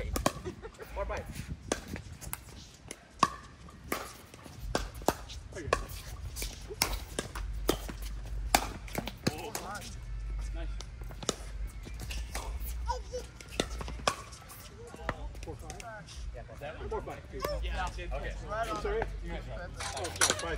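Pickleball paddles hitting a hard plastic ball, with the ball bouncing on the hard court: sharp pops at irregular intervals through a rally.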